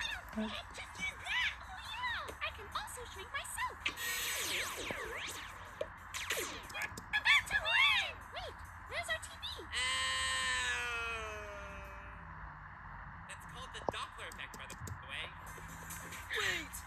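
Cartoon soundtrack playing from a screen and picked up by the microphone: animated character voices and sound effects over background music, with one long tone sliding slowly down in pitch about ten seconds in.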